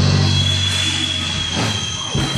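Live rock band held low chord on bass and guitar, ringing out and slowly fading, with a thin steady high-pitched tone coming in about half a second in and held through.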